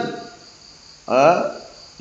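Crickets chirring steadily and high-pitched in the background during a pause in a man's talk. About a second in, the man makes a short hesitant voiced sound.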